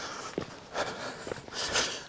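Quiet footsteps on dry, stony ground, with a couple of faint ticks and rustling from a person walking.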